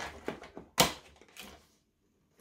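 Fingers prying open a perforated cardboard advent-calendar door: a few short scratchy tearing and crinkling sounds, the loudest just before a second in.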